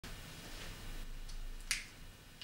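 Quiet room tone with a low hum, and one sharp, short click about one and a half seconds in.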